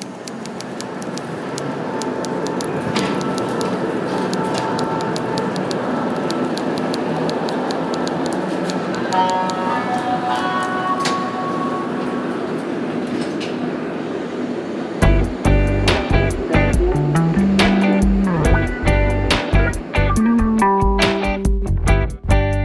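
Subway train running through a station, a steady noise that builds over the first couple of seconds with a few held tones above it. About fifteen seconds in, a song begins with a strong beat and a bass line.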